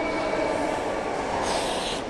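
Steady background din of a busy bus-station concourse: a reverberant mix of distant bus engines and crowd noise in a large hall, with no single event standing out.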